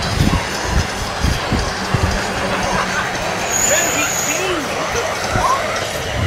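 Wind buffeting the microphone and wheel rumble on pavement from an electric skateboard riding fast, with a brief high-pitched whine about four seconds in.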